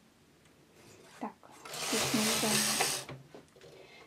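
Carriage of a Silver Reed domestic knitting machine pushed across the needle bed for one row, a rasping slide of about a second and a half. Partial knitting is engaged, so the pass knits only the working needles and wraps the end stitch while the neckline corner is shaped.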